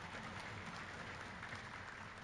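Faint applause from a hall audience, an even patter of many hands clapping at a low level.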